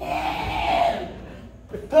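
A burst of many voices at once, crowd-like and shouted, lasting about a second.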